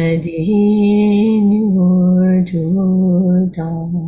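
A woman chanting a Buddhist dedication-of-merit prayer in slow, long-held notes that step up and down in pitch, with short breaks for breath.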